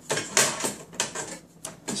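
Small metal cover plate being slid off and back onto a metal RF shield enclosure: a few brief metallic scrapes and clicks, near the start, about a second in and near the end.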